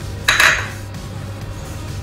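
A small ceramic bowl clinking once against hard kitchen surfaces about a quarter second in, a short sharp knock with a brief ring, as the bowls of ingredients are handled. Steady background music runs underneath.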